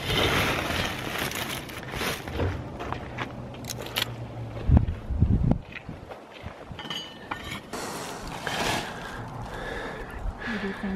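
Small shovel scraping and digging into gravelly ground, scooping up loose granite pebbles, with several sharp knocks of metal on stone about two, four and five seconds in.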